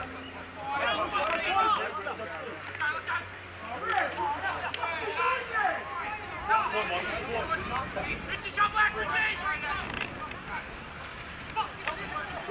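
Several voices calling and shouting over one another during a rugby league game, short unclear calls in quick succession.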